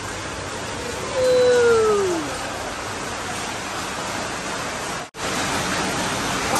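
Steady hiss of workshop background noise, with one falling vocal "ooh" about a second in that lasts about a second. The sound cuts out for an instant near the end.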